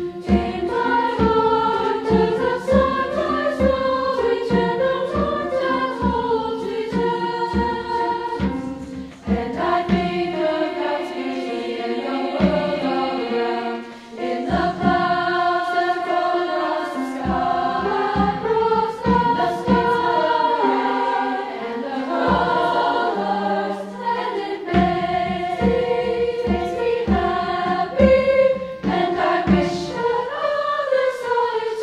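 Girls' treble choir singing in several-part harmony, accompanied by piano, with brief breaths between phrases about nine and fourteen seconds in.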